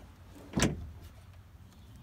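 Ford F-250 pickup tailgate being let down by hand and coming to a stop fully open with one loud clunk, about half a second in.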